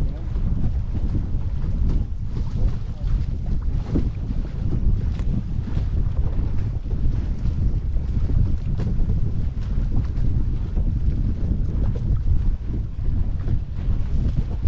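Wind buffeting the microphone in a steady, gusting rumble, over the rush of water along the hull of a small sailboat under way, with brief splashes and slaps of water against the bow.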